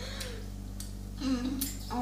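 Steady low electrical hum, with a child's voice starting up in the second half.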